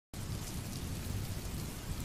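Steady rain, an even hiss with a low rumble underneath, starting suddenly a moment in.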